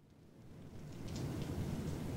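A low rumbling noise with scattered faint crackles, fading in from silence and growing steadily louder.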